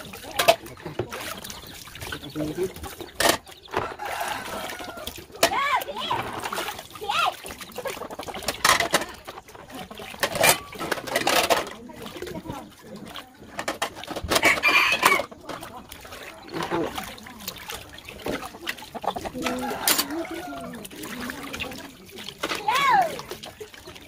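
Water pouring from a hose into a large plastic tub and splashing as dishes are washed and rinsed by hand, with a few sharp knocks of crockery. Chickens cluck in the background.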